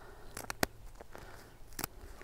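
Scissors snipping through a hen's long primary flight feathers during wing clipping: two quick snips about half a second in and another near the end.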